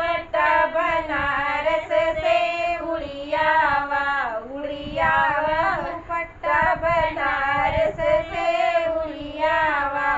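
Two women singing a gaali geet, a Hindi folk wedding song of teasing insults, in high, held, wavering voices with short breaks between phrases.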